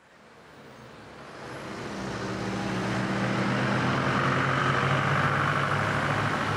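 Steady vehicle-like rumble with a low drone, fading in from silence over the first two to three seconds and then holding level.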